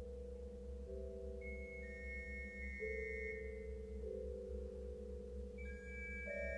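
Pipe organ holding slow sustained notes in the middle register that shift about once a second over a steady low pedal drone. High, thin ringing tones come in about a second and a half in and hold for a couple of seconds.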